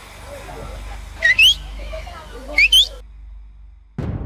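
Two pairs of quick rising whistled notes, each pair a little over a second apart, over a low steady rumble; the sound then drops to dead silence just before a cut.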